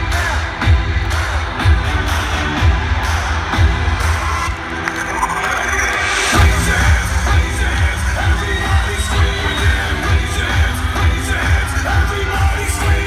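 Loud electronic dance music from a festival stage sound system, with a heavy kick drum about two beats a second. Around five to six seconds in, a swell of bright noise builds and the bass drops out for a moment before the beat comes back in.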